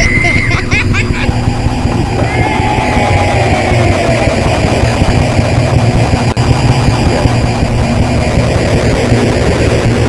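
Experimental musique concrète noise collage: a loud, dense, hissing and crackling wall of noise over a steady low hum. A high whistle-like tone cuts out within the first half-second, a faint falling glide drifts through a few seconds in, and there is a brief dropout about six seconds in.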